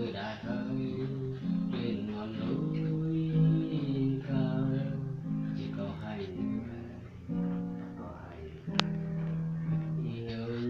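Acoustic guitar strummed in held chords that change every second or so, played without singing before the song begins. A single sharp click comes near the end.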